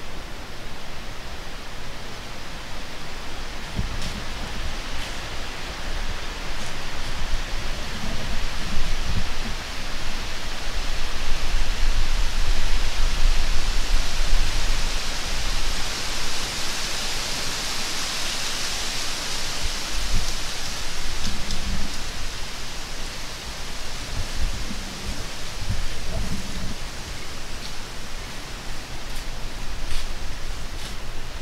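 Hiss of wind moving through dry autumn leaves and bare branches, swelling into a gust in the middle, with low rumbles of wind on the microphone now and then.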